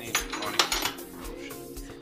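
Metal spanner clinking against the car battery's terminal hardware, a sharp clink near the start and a cluster about half a second in, over background music with a steady beat.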